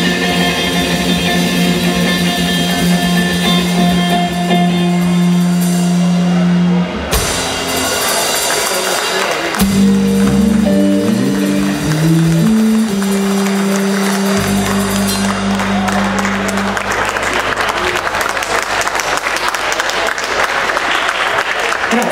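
Live blues trio of electric guitar, electric bass and drum kit playing long held notes, then a stepping bass run and a last sustained chord, as a song ends. Audience applause builds over the final chord from about two thirds of the way in.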